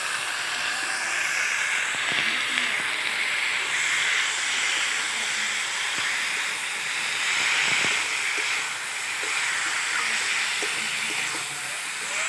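Raw chicken pieces sizzling in hot oil in a kadai, a steady hiss, as they are stirred with a spatula, with a few light scrapes of the spatula against the pan.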